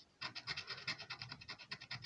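A plastic scratcher scraping the coating off a lottery scratchcard's prize panel in quick, rapid back-and-forth strokes, starting just after the beginning.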